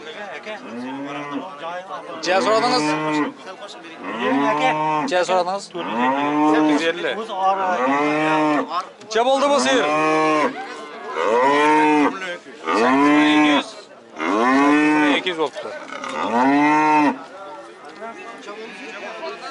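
A cow mooing over and over: about nine loud, drawn-out moos, each about a second long and coming every second and a half to two seconds, after a few quieter calls at the start.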